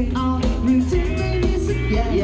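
Live rock band playing loudly through a large outdoor PA: drum kit, bass and electric guitars with a steady driving beat.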